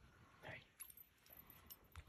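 Near silence, with a faint breathy sound about half a second in and a few faint, sharp clicks in the second half.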